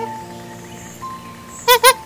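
Background music with held notes, then near the end two loud, short, high calls from a macaque.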